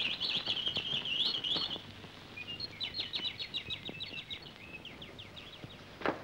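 Small birds chirping and twittering in quick, dense runs of high notes, in two stretches with a short break about two seconds in.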